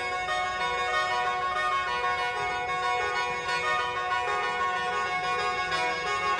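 Lao khaen, a bamboo free-reed mouth organ, playing a traditional Lao melody, with several notes sounding at once: steady held tones under a moving tune.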